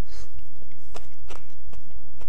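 A man chewing a hand-fed mouthful of rice with sambal, with a few soft wet mouth clicks and smacks, over a steady low hum.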